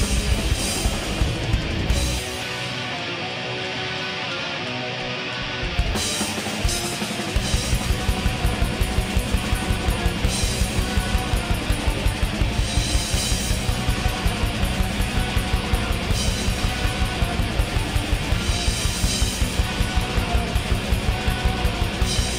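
Black metal band playing live: distorted electric guitars over a drum kit. About two seconds in the drums drop out and the guitars carry on alone for a few seconds, then the drums come back in with a fast, steady beat.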